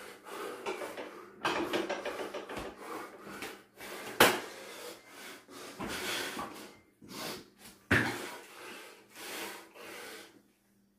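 A man breathing hard and loudly through slow burpees, a noisy breath roughly every second. Two sharp thuds of landing on a floor mat, about four and eight seconds in, the first the loudest sound.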